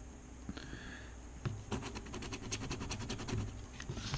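Faint, quick scraping strokes of a scratcher on a scratch-off lottery ticket's coating: sparse for the first second and a half, then a steady rapid run of strokes.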